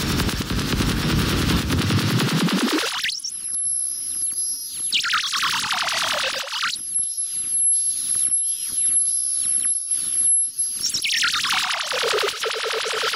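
Harsh electronic breakcore/noise music: a dense wash of noise whose bass is cut away by a filter that sweeps up, falls back, and sweeps up again. In the thinner passages a steady high whistling tone sits over fast stuttering glitches.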